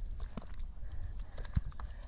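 Hands squelching and slapping in thick wet mud, with irregular wet clicks and a sharper thud about a second and a half in.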